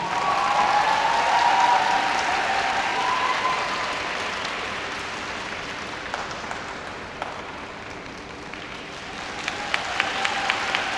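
Audience applauding in a rink, loudest in the first two seconds and gradually thinning out, with scattered single claps near the end.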